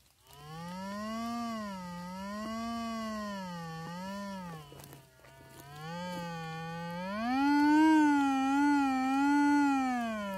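Metal detector sounding a continuous, wavering tone as its search coil sweeps over the ground, the pitch rising and falling with each swing. The tone dips lower around the middle, climbs higher and louder for the last few seconds, then falls away at the end.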